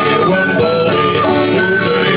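Instrumental passage of a French sea song played live: acoustic guitar accompanying a melody of held notes on a small wind whistle.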